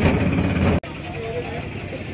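Auto-rickshaw engine and road noise from inside the cab, a loud low rumble that cuts off abruptly less than a second in. It gives way to quieter outdoor background with faint voices.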